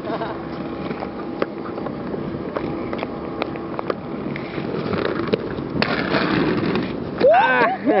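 Aggressive inline skate wheels rolling over brick paving, with scattered clicks, then a louder scraping rush about six seconds in as the skates grind a ledge in a royal grind. Laughter comes near the end.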